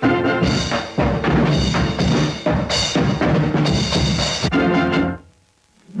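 Instrumental break of a lively dance-band song, with strong drum and percussion hits under the band, stopping abruptly about five seconds in for a brief silence.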